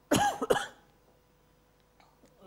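A woman coughs twice in quick succession.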